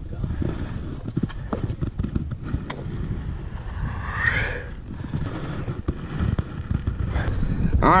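Wind buffeting a camera microphone, an uneven low rumble broken by scattered small knocks from handling.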